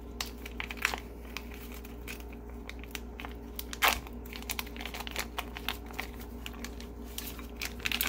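Plastic packaging around a Cornish hen being torn open and crinkled by hand: irregular crackling throughout, with one louder crackle about four seconds in.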